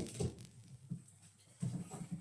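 Pet dog making a few short, low vocal sounds in quick succession.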